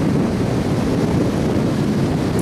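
Steady wind noise on the camcorder's microphone, with ocean surf breaking underneath.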